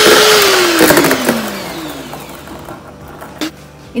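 An ikon Multi-Pro electric hand mixer beats cake batter in a steel bowl. About half a second in it is switched off, and the motor whine falls steadily in pitch as it winds down over a second or so, with a few clicks along the way.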